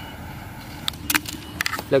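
Jet torch lighter hissing as its flame is held to the fuse of a firework fountain, followed by a few sharp clicks and taps.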